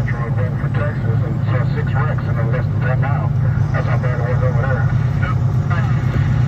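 Semi truck's engine and road noise making a steady low drone inside the cab at highway speed, with voices talking over it.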